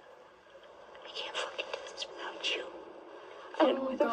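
Faint whispering: breathy, hissing syllables without much voice, starting about a second in, before a voice comes in at normal loudness just before the end.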